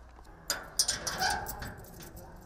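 Rusty sheet-metal door and padlock being shut and locked: a series of metallic clanks and rattles starting about half a second in.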